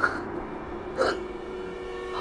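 A man's two short breathy gasps, about a second apart, over a faint steady held drone.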